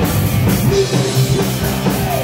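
Heavy metal band playing live at full volume, with electric guitar and drum kit.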